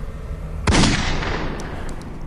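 A single handgun shot about two-thirds of a second in, its report echoing away over the following second, over steady low background noise.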